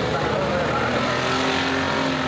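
Several enduro race cars' engines running at speed around a dirt oval, a steady, loud blend of engine noise.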